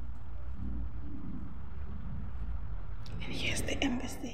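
Quiet, muffled voice, close to whispering, over a steady low rumble. About three seconds in, a short burst of hiss and sharp clicks.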